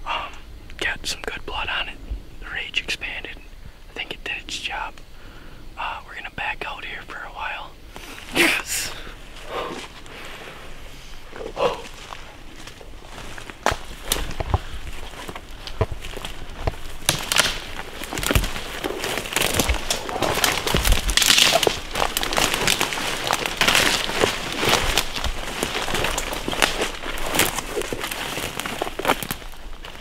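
Footsteps pushing through thick undergrowth: leaves and brush rustling and twigs crackling underfoot, becoming steady and dense from about halfway on.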